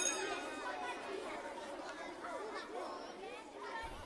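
Faint chatter of several overlapping voices, growing fainter.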